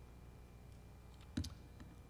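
Quiet room tone with a low steady hum, broken by a single sharp click about one and a half seconds in.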